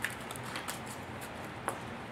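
Faint handling of freshly die-cut chipboard pieces: a light rustle with a few small clicks, one a little sharper near the end.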